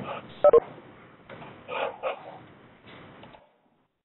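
Scattered noises from open microphones on a conference call line, cut narrow like phone audio. Two sharp clicks about half a second in are the loudest sounds, followed by weaker bursts of sound that stop near the end.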